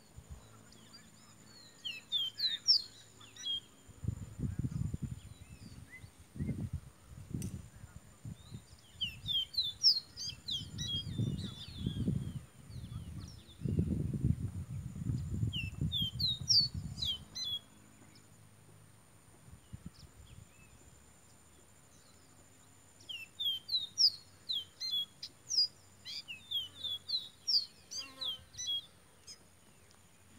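Caboclinho, a Sporophila seedeater, singing in phrases of quick, sliding whistled notes. There are about four spells of song: near the start, twice in the middle and a longer run near the end.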